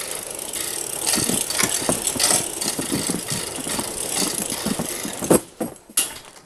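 Metal roll-up door of a storage unit being rolled open, its slats rattling, ending with a loud clank a little over five seconds in as it reaches the top.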